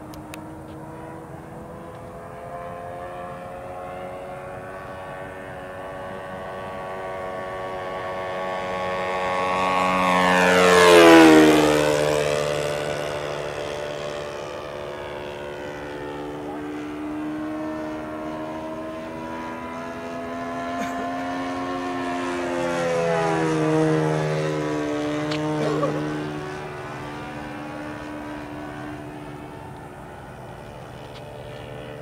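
Radio-control P-40 warbird's Saito 1.00 four-stroke glow engine flying a pass: the engine note builds and peaks about eleven seconds in, dropping in pitch as the plane goes by. It comes by again, quieter, a little past halfway.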